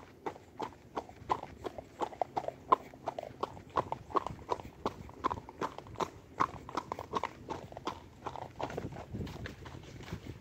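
A grulla gelding's hooves on a gravel road, ridden bareback at a walk: a steady clip-clop of about three to four hoofbeats a second.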